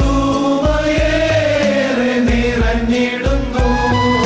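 Men's choir singing a Christmas song over an orchestrated backing track with a steady beat.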